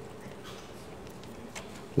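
A pause in a man's preaching: only a faint steady hum of room tone, with the tail of his last word fading at the start.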